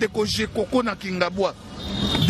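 Speech: a person talking continuously in quick phrases.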